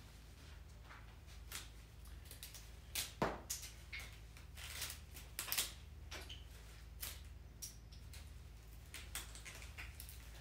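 Florist's scissors snipping through a bundle of flower stems: a run of irregular crisp cuts, the loudest about three seconds in and again around the middle.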